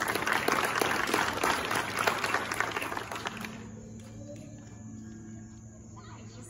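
A small crowd applauding, a dense patter of hand claps that fades out about three and a half seconds in.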